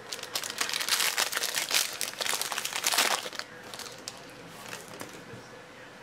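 Foil card-pack wrapper crinkling loudly as it is pulled open by hand, dense crackling for about the first three seconds. It then drops to a few faint ticks.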